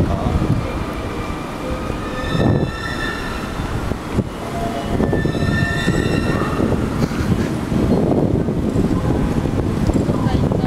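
Railway station concourse noise, steady and busy throughout, with two held high-pitched tones with overtones, each lasting just over a second, about two and a half and five seconds in.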